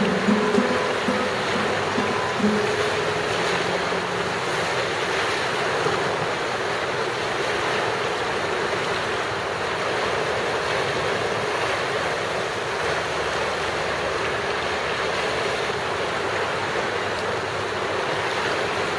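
Steady rush of fast-flowing river water, close to the microphone. The last notes of music fade out in the first two or three seconds.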